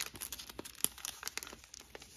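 Thin clear plastic of a stamp-set case and its sheet crinkling and clicking in the hands as the case is opened: a quick, irregular run of small sharp crackles.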